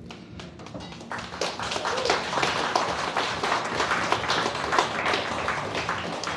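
Audience applauding: a dense patter of clapping that builds from about a second in, holds, and eases off near the end.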